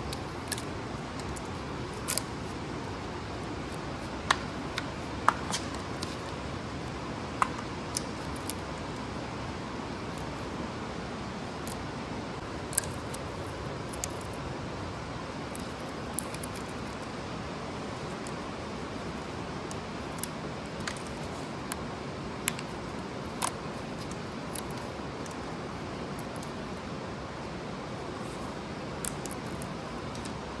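Scattered, irregular sharp metallic clicks and clinks of tools and bolts as the front gear plate is unbolted and worked off a Caterpillar 3406E diesel engine block, over a steady low hiss.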